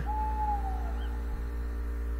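A single owl hoot: one clear note of about half a second that slides a little down in pitch, over a steady low hum.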